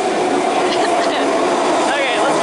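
Vancouver SkyTrain train, driven by linear induction motors, pulling into an elevated station. Its loud, steady running noise carries a constant humming tone.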